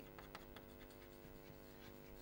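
Chalk writing on a blackboard: faint, scattered taps and scratches.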